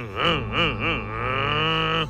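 A man's voice imitating a bus's diesel engine starting up. It wavers in pitch about three times a second like an engine turning over, then rises in one long held glide as it revs, and cuts off suddenly. A quiet music bed runs underneath.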